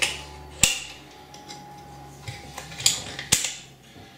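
Sharp clicks and knocks of the metal fittings of a water-rocket cluster launcher being handled and locked into place, about five in all, the loudest one under a second in and another near the end.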